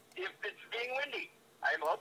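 Speech only: a voice talking in short phrases, with a brief pause just past the middle.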